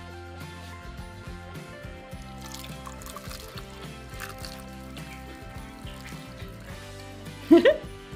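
Background music, with a faint trickle of hot milk being poured from a plastic jug into a ceramic mug over a chocolate bomb.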